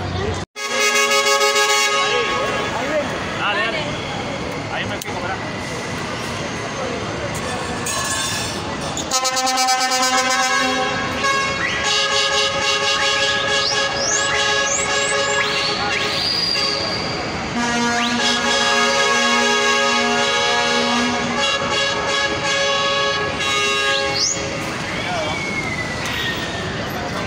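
City buses sounding their horns in long, overlapping blasts, several tones at once, with a crowd's voices around them.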